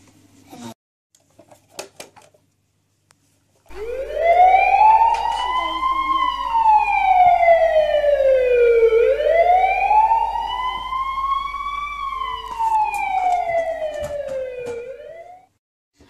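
Toy emergency vehicle's electronic siren: a slow wail that rises and falls twice, starting about four seconds in and cutting off shortly before the end. A few light clicks of toy handling come before it.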